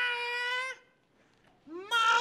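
A man's long, drawn-out yell that rises and then holds one steady note, cutting off less than a second in. After a short pause, a second rising yell starts near the end.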